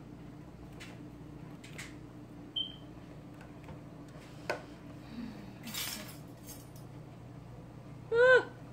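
Light scattered clicks and clinks of a small plastic bottle's cap being worked open and of kit items handled on a glass tabletop, with one short high ring a few seconds in and a brief rustle around six seconds.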